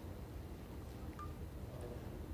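Quiet room tone of a large hall: a steady low hum and faint hiss, with one short faint high tone about a second in.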